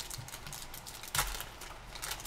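Foil wrapper of a football trading-card pack crinkling as it is torn open by hand, with a sharper crackle just over a second in.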